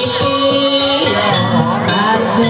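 Loud live jaranan campursari music played over a sound system: held instrumental tones with a man singing into a microphone over them.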